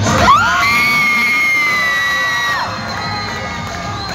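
Children cheering and shouting, one high voice sliding up into a long 'whoo' held for about two seconds before it drops away, with the dance music running underneath.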